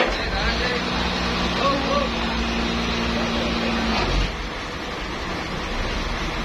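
Steady hum of running sawmill machinery over a constant hiss; its tone cuts out about four seconds in. Workers' voices are heard briefly in the background.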